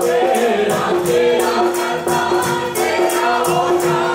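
Devotional bhajan sung by a group of voices, a woman leading on a microphone, over a steady held accompanying note and a percussion beat of about three strokes a second.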